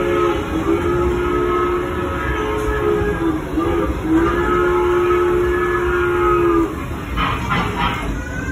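Recorded steam-train whistle sound effect from a children's ride train's speaker: two long blasts of a several-note whistle, the second ending about six and a half seconds in, with a few short clacks near the end.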